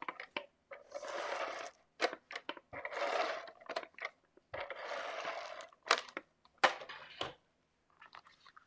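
Folded cardstock being rubbed with a hand-held tool in three strokes, each about a second long, likely pressing down the card's fold. Short taps and clicks of paper and tool on a cutting mat fall between the strokes.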